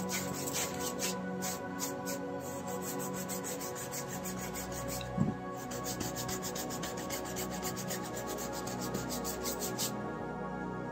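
Paintbrush bristles scrubbing back and forth on a stretched canvas in quick repeated strokes, several a second, blending the paint. There is a single thump about five seconds in, and soft background music underneath.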